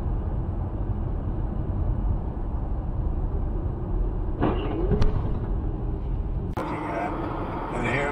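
Steady low rumble of engine and road noise inside a moving car, picked up by a dashcam, with a brief voice about four and a half seconds in. Near the end the sound changes abruptly to a different, busier car recording with voices.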